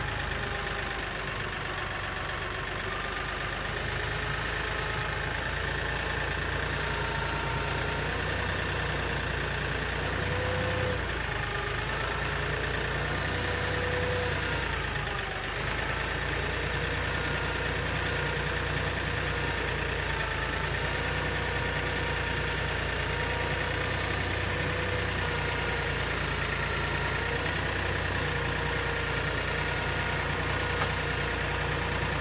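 Kioti tractor's diesel engine running steadily, driving the loader hydraulics as the quick-attach plate is worked into a grapple. A whine rides over the engine and shifts in pitch now and then.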